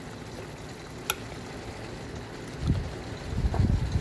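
Faint steady kitchen background with a single sharp click about a second in, then low rumbling handling noise on the phone's microphone that grows louder toward the end.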